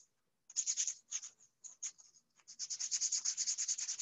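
Sandpaper rubbed by hand over a disc in quick back-and-forth strokes, roughing the surface so that paint will adhere. The strokes pause for about half a second at the start and come in short spells until about halfway, then run on steadily.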